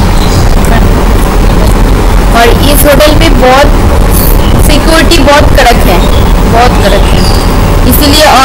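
A person's voice speaking a few words in short snatches over a loud, steady low rumble.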